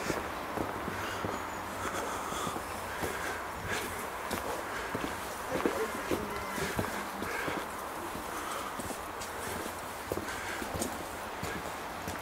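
Footsteps on a cobblestone bridge: irregular hard knocks of shoes striking the stone setts as someone walks along.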